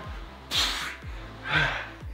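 A man breathing hard with effort during push-ups: two forceful breaths out through the mouth, about a second apart. Background music with a steady beat runs underneath.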